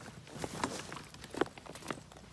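Footsteps walking, with irregular knocks and rustles of gear being carried; the sharpest knock comes about one and a half seconds in.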